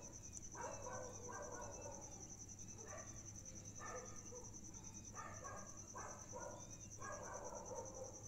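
Faint background sound: insects chirping in a steady, high, finely pulsing trill, with short faint animal calls coming every second or so.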